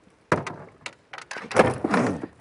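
Short knocks and scrapes of a big catfish being handled against an aluminium boat, with a strained groan about one and a half seconds in.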